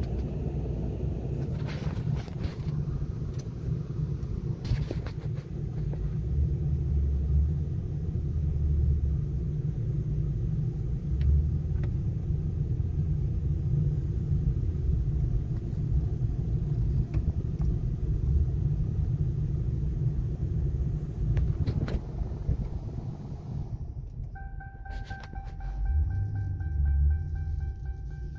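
The 2011 Ford Crown Victoria Police Interceptor's 4.6-litre V8 and road noise heard from inside the cabin while driving slowly at low revs: a steady low rumble with a few knocks. Near the end the rumble eases and a steady high tone joins it.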